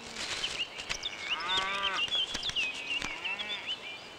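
Cattle mooing twice: a longer call and then a shorter one, each rising and falling in pitch. High bird chirps go on throughout.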